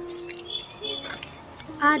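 A quiet scene change: a held background-music note at the start, then faint outdoor ambience with a few high chirps, before a woman starts speaking near the end.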